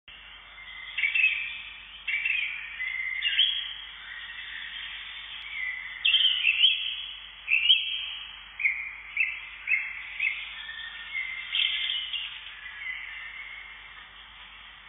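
Songbird singing: a string of short high chirps and whistled phrases, some sliding down in pitch, coming every half second to a second and thinning out near the end.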